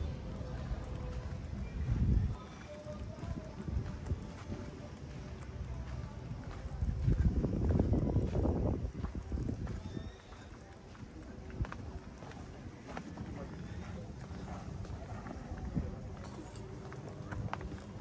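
Footsteps walking on a gravel path, with people talking faintly in the background. A louder low stretch comes about seven to nine seconds in.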